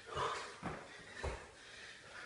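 Hard breathing from a man doing burpees, with three dull thuds about half a second apart as his hands and feet land on a tiled floor.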